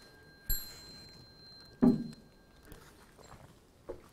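A metal Buddhist ritual bell struck once about half a second in, ringing on in high, clear tones. A little over a second later comes a single loud, dull thump, and a faint click near the end.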